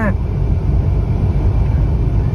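Steady low rumble of a car's engine and tyres on the road, heard from inside the moving car's cabin.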